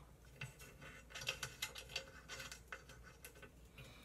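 Faint, irregular small metallic clicks and ticks of a wasteboard fastener screw being fitted and turned by hand in the slot of an aluminium extrusion rail.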